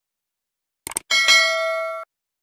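A few quick clicks, then a single bright notification-bell ding that rings on for nearly a second, slowly fading, and is cut off abruptly: the sound effect of a subscribe animation's notification bell being switched on.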